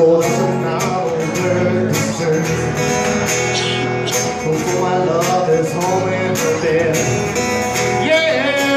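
Acoustic guitar strummed in a steady rhythm, an instrumental passage between the sung lines of a slow love song.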